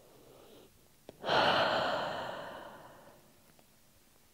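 A woman's deep breath: a faint inhale, a small click, then a long open-mouthed exhale, a sigh that starts loud and fades away over about two seconds.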